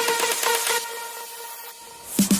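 Sound effect of an animated channel intro: a grainy, crackling rush over a faint held tone, fading steadily.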